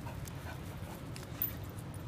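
Dogs sniffing and breathing faintly at close range, over a steady low rumble.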